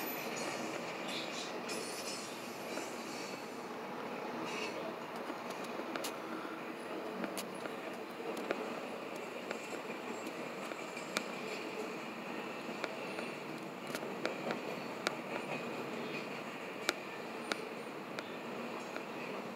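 Norfolk Southern double-stack intermodal freight train rolling past: a steady rumble of wheels on rail, broken by sharp, irregularly spaced clicks.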